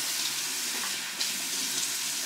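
Bathroom sink tap running, a steady hiss of water into the basin.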